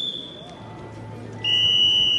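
Two shrill whistle blasts, a referee's whistle at the start of a freestyle wrestling bout. The first is short and slightly higher; the second, louder and longer, comes about one and a half seconds in and dips in pitch as it ends.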